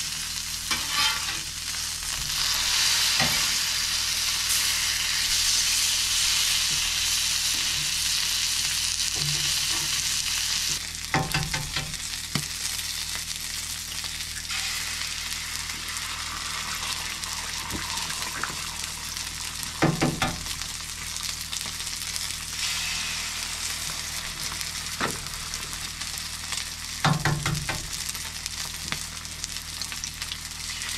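Ribeye steaks frying on a hot flat-top griddle: a steady high sizzle, louder during the first ten seconds or so. A few short, sharp clicks of a cooking tool or utensil against the griddle break in now and then.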